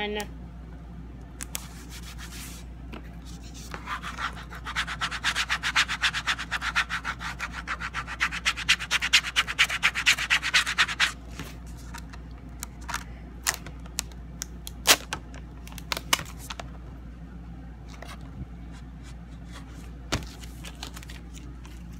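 Quick back-and-forth rubbing of a hand-held tool across the surface of a printed sign, about five or six strokes a second for some seven seconds, starting about four seconds in. Scattered light taps and clicks follow, with one sharper knock past the middle.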